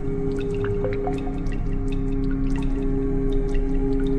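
Dark ambient music: a steady low held drone with scattered, irregular water-drip sounds over it.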